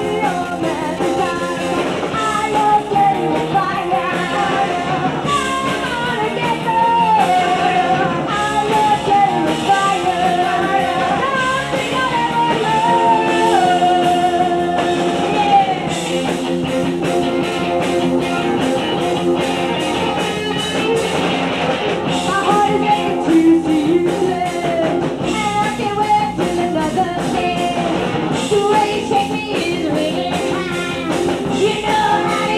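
Live punk rock band playing a song: a woman singing lead over electric guitar and a drum kit.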